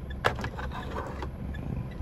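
Mitsubishi Strada's 2.5 DI-D four-cylinder diesel idling, a steady low rumble inside the cab, with a couple of soft clicks of the phone being handled about a quarter-second and a second in.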